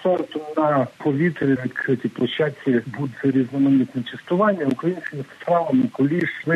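A man speaking continuously over a telephone line, his voice thin and narrow, with the high end cut off.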